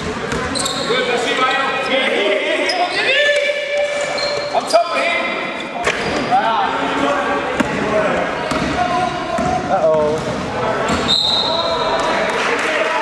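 A basketball bouncing on a sports-hall court during play, with short sharp knocks scattered through. Players' shouts and calls echo around the large hall.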